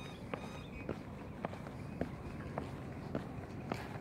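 Footsteps on a concrete sidewalk at a steady walking pace, about two steps a second, each a short faint tap over low background noise.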